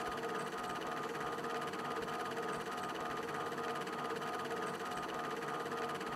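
Faint steady hiss with a low, even hum, with no music or voices.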